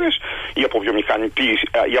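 Only speech: a man talking in Greek over a telephone line, hesitating on a drawn-out "e" before going on.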